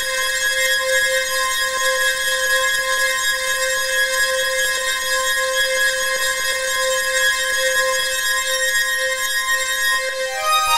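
Experimental electronic music: a synthesized drone holding one steady mid-pitched tone with a slight pulse, over a bright shimmer of high overtones.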